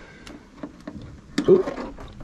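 A few light, sharp clicks from a metal snap hook on a rope line as it is handled and clipped onto a dinghy's bridle.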